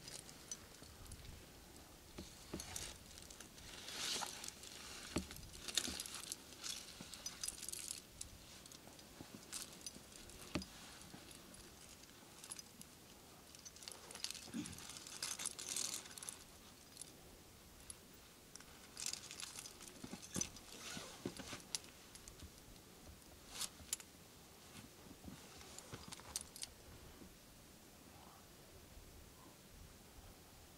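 Metal climbing gear clinking and jingling in short scattered bursts every few seconds, with quieter gaps between.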